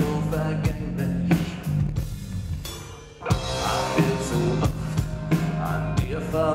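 A live rock band plays: a steady drum kit beat under keyboards and a male singer. Just after two seconds in, the band drops almost out for about a second, then comes crashing back in.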